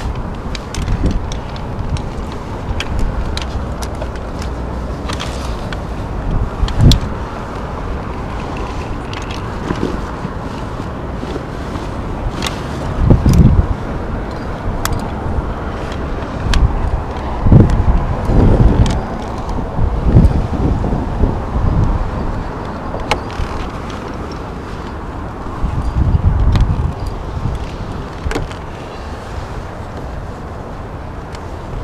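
Wind on a head-mounted camera's microphone: a steady rumbling noise that swells in gusts several times, with scattered small clicks and scrapes.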